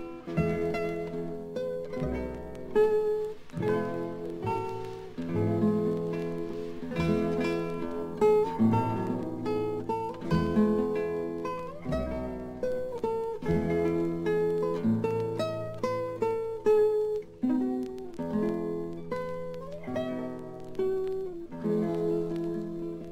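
Instrumental passage of an Okinawan folk song: plucked sanshin melody over sustained low accompaniment, with no singing.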